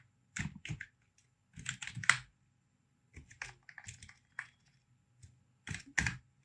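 Typing on a computer keyboard: several quick runs of keystrokes, separated by short pauses.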